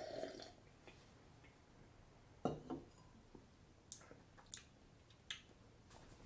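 A man sipping beer from a glass and swallowing, then a few faint, wet mouth clicks and smacks as he tastes it.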